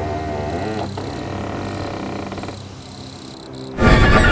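Dark, droning film score: wavering low tones in the first second give way to steady drones that fade down, then a sudden loud swell comes in just before the end.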